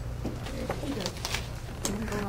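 Room sound between remarks: a low steady hum under faint murmured voices, with a few light clicks and rustles of handling.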